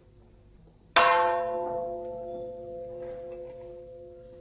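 A bell struck once about a second in, ringing on with a long slow decay. A lower tone in the ring pulses as it fades.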